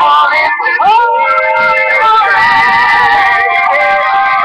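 Pop song playing with a sung vocal line: long held notes over the accompaniment, with a rising slide into a note about a second in.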